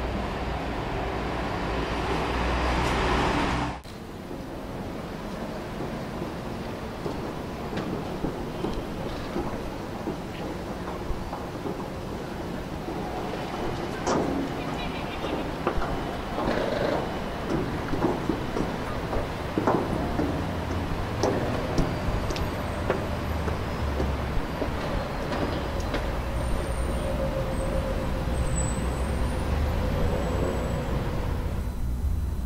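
Background city or rail noise that swells for the first few seconds and cuts off abruptly, then a quieter steady hum with scattered short clicks.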